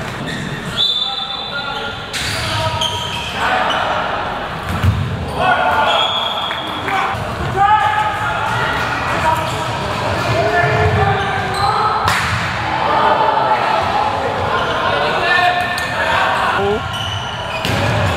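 A handball bouncing and striking on the hard court, with a few sharp knocks, amid players' and spectators' shouts that echo through a large sports hall.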